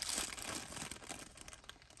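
Thin clear plastic packet crinkling as it is handled, a dense crackle that is strongest in the first second and thins out toward the end.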